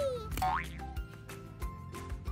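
Light background music for children with a steady beat, opened by comic sound effects: a falling slide tone that ends just after the start, then a quick rising boing about half a second in.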